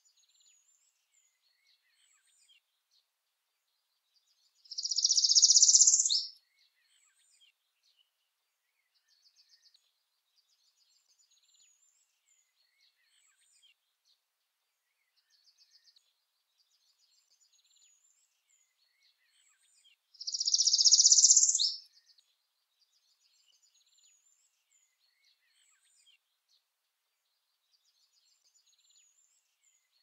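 Northern parula singing twice, about fifteen seconds apart: each song is a high, rising buzzy trill about a second and a half long that ends in an abrupt downward flick. Faint high chirps sound between the songs.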